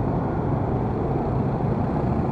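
Steady low rumble of a motor scooter's engine and the surrounding motorcycle and car traffic creeping along in a jam.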